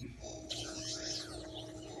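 Faint BB-8 droid chirps and warbling beeps from the Sphero app, played through the tablet's speaker as the toy acknowledges its "Okay BB-8" wake word, over a faint steady hum.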